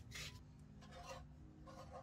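Faint hand-sanding of wooden violin pegs: a few soft rubbing strokes, about a second apart, as the old pegs are shaped to fit the pegbox.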